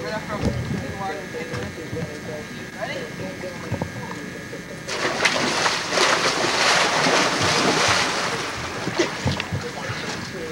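Several boys jumping and diving into a swimming pool at once: about five seconds in, a burst of splashing and churning water lasting about three seconds, after children's voices.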